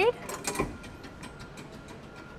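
Subway turnstile's metal arms turning as a person pushes through after a MetroCard swipe: a ratcheting clatter of clicks with a low thud about half a second in, then fainter ticking as it settles.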